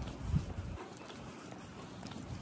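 Footsteps on a concrete path at a walking pace. A low rumble thins out about a second in, with one louder thump just before.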